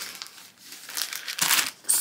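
Thin clear plastic envelope crinkling in the hands as it is pulled out of a savings binder: soft, scattered rustles, strongest in the second half.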